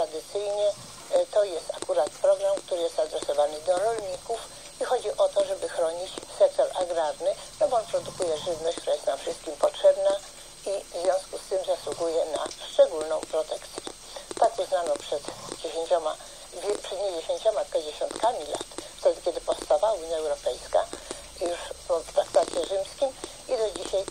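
A woman talking on without pause in a radio broadcast, her voice thin and narrow-sounding, over a faint steady hiss.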